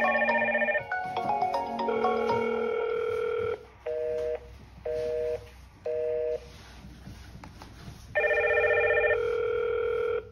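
Hikvision video intercom call ringtone: a chiming melody that stops after about three and a half seconds, followed by three short two-note beeps a second apart as the call ends. The ringing starts again about eight seconds in, when a new call comes through from the door station.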